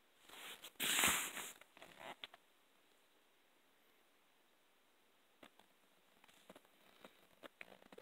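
Cardboard shoebox being handled: a brief scuffing rustle about a second in, two smaller ones shortly after, then a few faint clicks.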